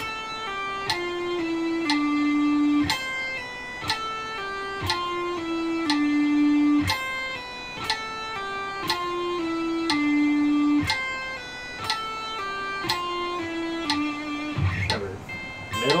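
Electric guitar playing a slow legato pull-off exercise at 60 beats per minute. Each picked note is followed by pull-offs to lower notes in short descending phrases, and each bar ends on a held note, over about four bars.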